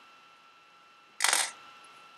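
A short clatter of small pebble counters clicking against one another as fingers gather them on a paper counting board, a little over a second in.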